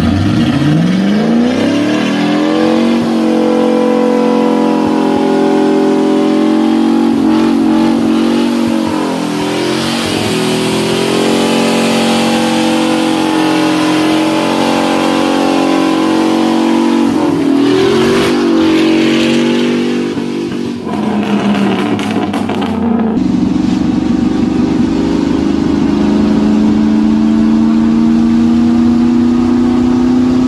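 Chevy pickup's 4.8 L V8 revved hard for a burnout: the revs shoot up in the first two seconds and are held high with small swings while the rear tyre spins on antifreeze-wetted pavement, with a brief dip about two thirds of the way through. Near the end the sound changes abruptly to a steadier engine note that climbs slowly in pitch.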